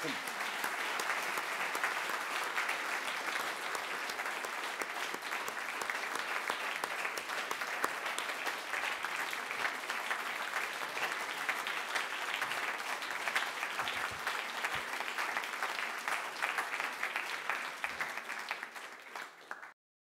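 Audience applause: steady clapping from a room full of people that goes on evenly for about twenty seconds and cuts off abruptly near the end.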